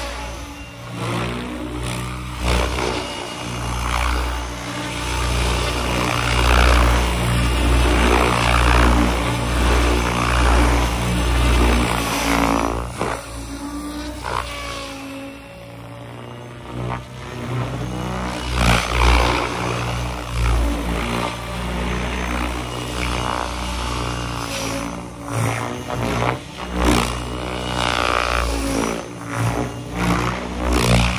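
ALIGN TB70 electric RC helicopter flying with its rotor at 1800 rpm headspeed: the main rotor blades whooshing and the electric motor and drivetrain whining. The pitch glides up and down and the loudness swells and fades as it passes close and pulls away, quieter for a few seconds around the middle.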